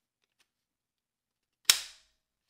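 A single sharp plastic snap near the end, dying away within a fraction of a second, from the Mega Minion toy figure being handled.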